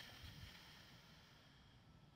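Near silence: a faint, breathy exhale fading away in the first second, then quiet background.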